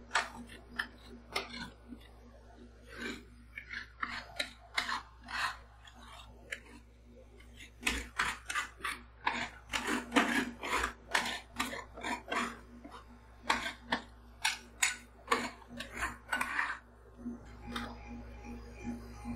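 Metal spatulas scraping and tapping on the frozen steel plate of a rolled-ice-cream pan as a crunchy snack-flecked ice cream base is spread and smoothed into a thin sheet. Irregular quick strokes, coming thicker and louder through the middle and latter part.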